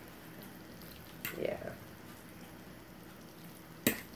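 A fork stirring sauced noodles in a ceramic bowl, a quiet, soft stirring sound, then one sharp clink of the fork against the bowl near the end.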